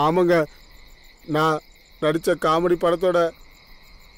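A man speaking in several short phrases over a steady, high-pitched chirping of night insects.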